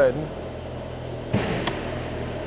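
A Mercedes-AMG E53's turbocharged 3.0-litre inline-six idling with a steady hum. Two short clicks come about a second and a half in.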